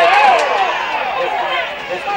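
Several voices shouting at a football match, overlapping and high-pitched, loudest in the first moment.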